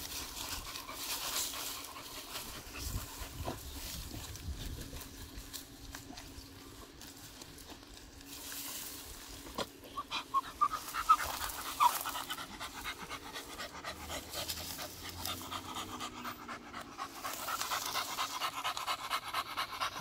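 A beagle panting as it noses and digs in tall grass, with the grass blades rustling.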